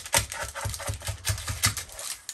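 Wooden stomper end tamping granola bar mixture down into a parchment-lined baking pan: a quick run of dull taps, about six a second.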